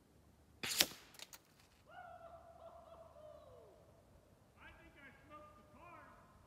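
A single sharp crack of a .357 FX Impact M3 PCP air rifle shot about a second in, with a few smaller clicks after it, as the slug strikes the target. Then a long, held distant call that drops away, and a few shorter faint calls, like a distant voice, near the end.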